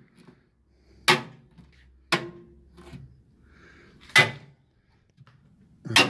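A small handheld magnet clacking onto the steel body panels of a 1955 Nash Metropolitan, four sharp clacks a second or two apart. It sticks each time, the sign of factory sheet metal with no body filler beneath the paint.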